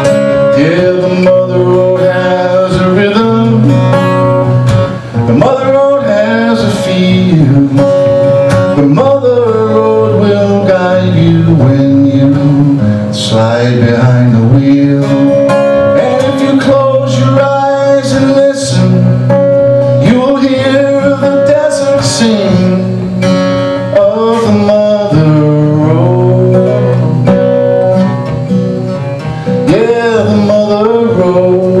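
Live acoustic guitar playing a country song, strummed and steady, with the performer's voice coming in at times.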